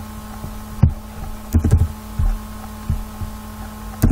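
Computer keyboard and mouse clicks picked up as about half a dozen short, irregular low thuds, over a steady hum.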